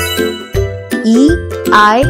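Cheerful children's background music with a repeating bass note and bright jingling chimes.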